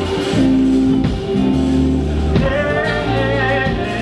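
Live band music with electric guitar, keyboard and bass under a man singing into a microphone, with long held notes.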